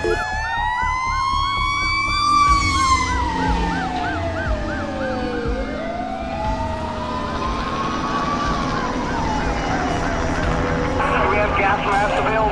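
Emergency vehicle sirens. One wails slowly up and down, each rise and fall taking a few seconds, while a second gives a fast repeating yelp, about two cycles a second.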